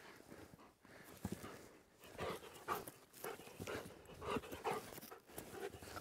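Belgian Malinois panting faintly in short, quick breaths during ball play.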